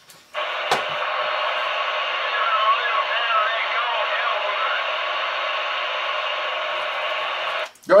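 Another operator's voice answering a radio check over AM CB, coming out of the Realistic TRC-474's speaker: a thin, hissy, narrow-sounding radio voice under steady static. It starts abruptly a moment in and cuts off just before the end, when the other station unkeys.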